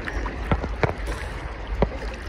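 Sea water sloshing and lapping around a phone in a waterproof case held at the surface of choppy water, with a low rumble on the microphone. Three sharp taps come through, about half a second in, near one second and near the end.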